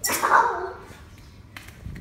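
A child making a short, breathy vocal sound effect for a pretend blast, lasting about half a second. A small click follows.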